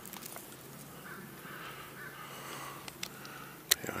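Quiet forest background with faint rustling and a steady low hum, then a single sharp knock near the end as a hand takes hold of a snapped conifer branch.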